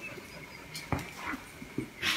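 A cat and a small dog scuffling over a leash on a tile floor. One sharp tap comes about a second in, then a few fainter clicks.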